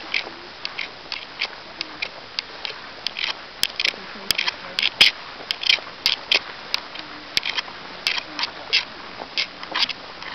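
Footsteps wading through tall grass, the blades swishing against legs and boots in short rustles about twice a second, with a few sharper clicks in the middle.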